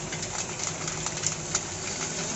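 Muri (puffed rice) machine running with a steady hum while grains rattle down its wire-mesh sieve, with scattered sharp clicks of grains striking the mesh.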